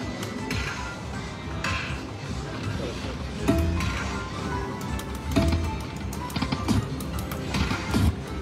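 A Lightning Link Tiki Fire video slot machine plays its electronic music and reel-spin effects through several spins in a row. A short sharp sound comes every second or two as the reels start and stop.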